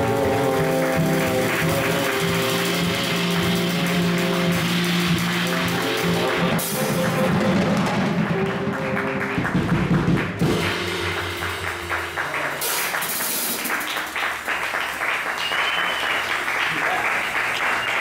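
Jazz quartet of tenor saxophone, guitar, upright bass and drums ending the tune: sustained notes for the first six seconds or so, then a cymbal-and-drum flourish. After about ten seconds the band stops and applause follows.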